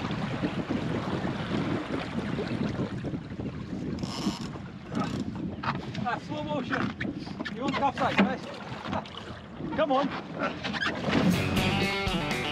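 Wind on the microphone and water rushing along the hull of a small wooden sailing dinghy heeled hard over, with a man's voice calling out in the second half and music coming in near the end.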